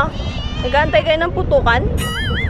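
Cats meowing, several short high meows in quick succession.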